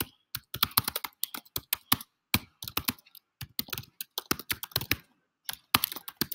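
Typing on a computer keyboard: a quick, uneven run of key clicks, with a brief pause about five seconds in.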